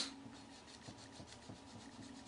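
Foam sponge dauber dabbing ink onto cardstock through a paper mask: faint, rapid soft taps, several a second.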